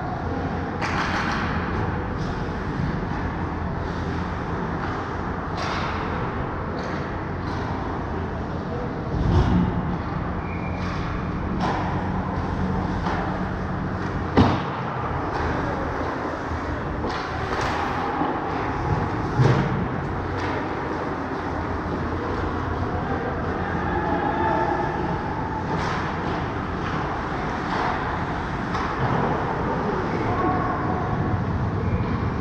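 Ice hockey play on an indoor rink: skates scraping and carving the ice and sticks clacking, over a steady low hum. About fourteen seconds in there is a single sharp crack of a hard hit, with duller thuds a few seconds before and after.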